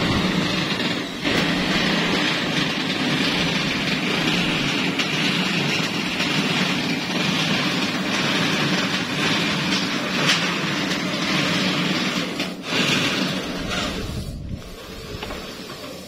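An engine running steadily, then fading away over the last couple of seconds.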